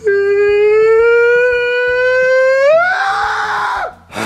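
A long, loud vocal scream held on one note for nearly four seconds. Its pitch creeps up slowly, climbs sharply near the end and turns rough and noisy, then cuts off.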